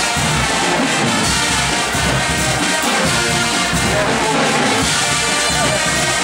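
A Guggenmusik carnival band playing loudly together: massed brass and drums.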